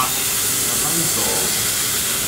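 Thin slices of marbled beef shinshin (a cut of the round) sizzling on a yakiniku gas grill grate: a loud, steady hiss.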